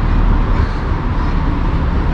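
Steady road traffic noise: cars driving past close by on the roadway alongside.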